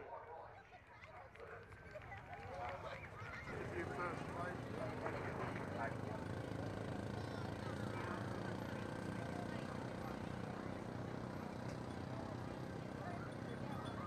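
Faint, indistinct voices of people chatting over a steady background hum; it gets louder about three seconds in.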